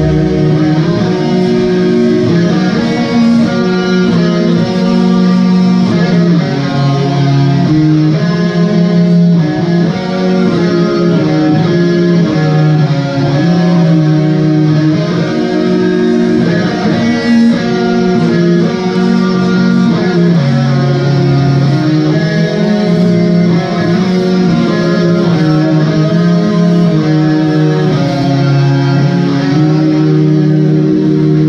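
Live metal band with electric guitars and bass guitar playing loud, slow, held notes and chords that change every second or two.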